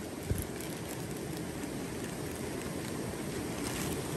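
Thin plastic bag rustling and crinkling as hands open it to take out a small fish, a steady hiss with one low thump a fraction of a second in.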